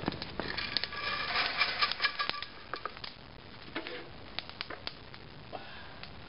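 Freshly roasted coffee beans tipped out of a hot-air popcorn popper into a stainless steel colander: a dense rattle of beans for about two seconds, then scattered sharp cracks as the beans keep crackling in second crack.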